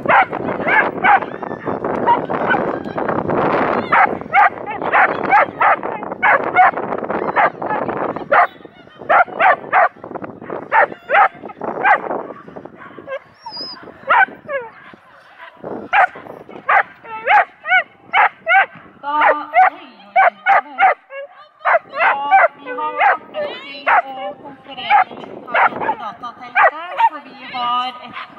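A dog barking again and again, in runs of quick short barks with brief pauses between them. A steady rushing noise lies under the barks for the first eight seconds or so.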